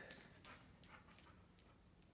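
A dog's claws clicking on a hardwood floor: about five short, faint clicks in the first second and a half as it moves about and settles, then quiet room tone.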